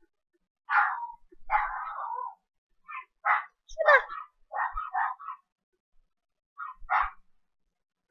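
A dog barking: a string of short barks with pauses, off and on.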